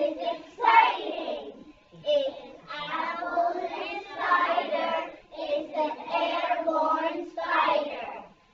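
A group of young children singing together in unison, in short phrases with brief pauses between them.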